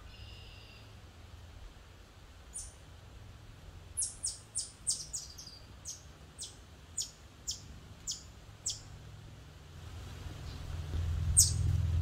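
A series of sharp, high-pitched chip calls from a small animal, each one sliding down in pitch and coming about two a second for several seconds. A low rumble builds near the end.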